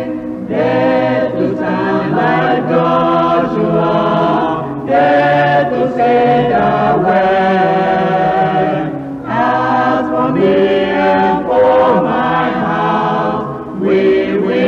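A choir or congregation singing a worship song together in several voices, in long sung phrases with brief breaths about five and nine seconds in.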